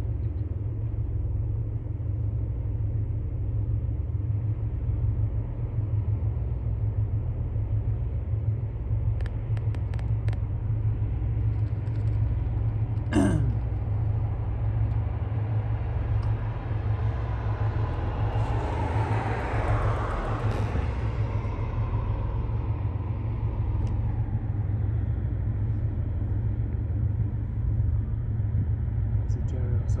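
Steady low outdoor rumble with an even pulse. About two thirds of the way in, a vehicle passes, swelling and fading, and a short squeal falling in pitch comes a little before that.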